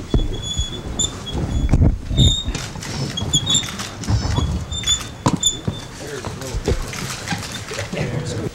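Office swivel chairs squeaking in short high chirps, with scattered knocks and clicks, as a group sits down at a conference table and shifts chairs into place; the squeaks stop about five and a half seconds in. Low voices murmur underneath.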